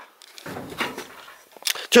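A man's breathy exhale and quiet unvoiced mouth sounds between sentences, with a couple of short clicks near the end.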